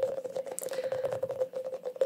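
Sticky rubbery stress balls handled close to the microphone: a quick, irregular run of small tacky clicks and crackles from fingers on the balls, over a steady faint tone.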